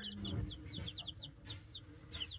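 Baby chicks peeping: a quick, uneven run of short, high peeps from several chicks at once, about a dozen in two seconds.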